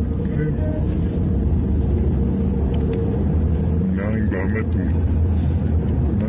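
Steady low engine and road rumble of a vehicle on the move, with a voice speaking briefly about four seconds in.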